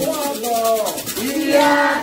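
A single voice singing a Candomblé chant for the orixá Iemanjá, the pitch sliding up and down over long held notes, with light percussion keeping time behind it.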